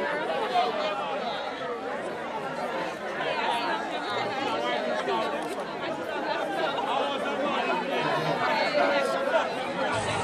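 Many people talking at once: a steady babble of overlapping voices, with no music playing.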